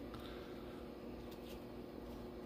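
Faint slides and ticks of baseball cards being thumbed through by hand in a stack, over a low steady hum.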